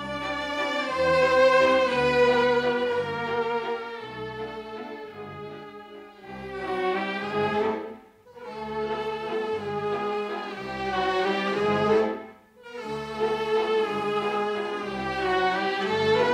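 Small theatre orchestra playing a lilting melody led by strings over a steady pulsing bass. The music comes in phrases with brief breaks about eight and twelve seconds in.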